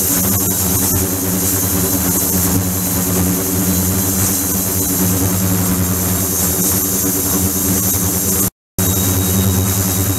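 Ultrasonic tank running with its water agitated: a steady hum with even overtones under a high hiss. It cuts out for an instant near the end.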